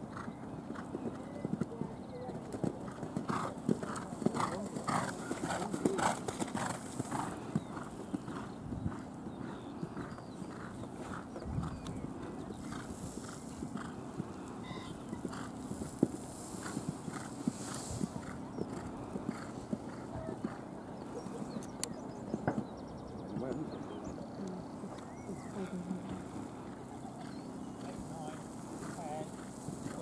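A horse's hooves beating on an arena surface in a canter, a quick repeated rhythm of hoofbeats.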